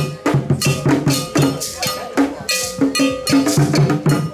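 Ghanaian drum ensemble playing Kete, a fast, dense interlocking rhythm on hand-struck drums over a ringing metal bell pattern.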